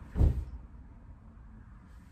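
A single low thud about a quarter second in, a foot in a sock stepping down onto a timber floor, followed by quiet room tone.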